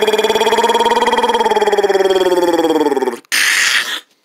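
A person imitating a chainsaw with the voice: one long buzzing, rattling drone that rises a little in pitch, then drops and stops about three seconds in, followed by a short breathy hiss.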